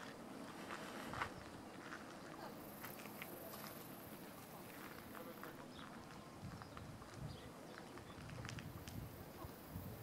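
Faint outdoor ambience with a low steady drone, the noise of farm machinery working a neighbouring field, and scattered soft clicks and rustles.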